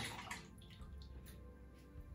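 Faint water splashing in the first second as a safety razor is rinsed in the sink, over quiet background music.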